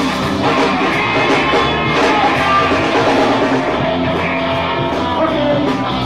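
Live rock band playing, with electric guitars and a drum kit, and a voice singing over them.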